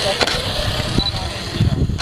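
People talking indistinctly, with an uneven low rumble on the microphone.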